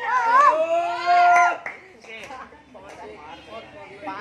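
Excited high-pitched shouts from voices around the sparring, one long 'ohh' held for about half a second and breaking off about one and a half seconds in, then quieter chatter.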